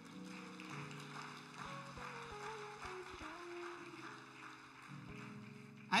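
Soft keyboard chords held and changing slowly, under a congregation's light clapping and cheering. The response is thin, short of the full room.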